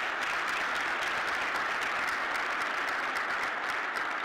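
Audience applauding, a dense even clapping.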